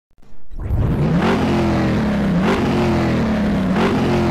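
Car engine sound effect revving, starting about half a second in. Its pitch jumps up three times, about 1.3 s apart, and sags between the jumps.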